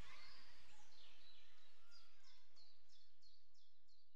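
Faint bird-like chirping: a run of short, high, falling chirps about three a second, starting about a second in and fading away.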